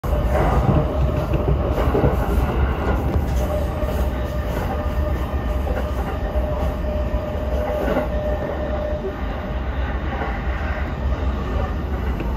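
Train running on the track, heard from aboard: a steady low rumble with a held tone that fades about nine seconds in, and a few scattered clicks from the wheels over rail joints.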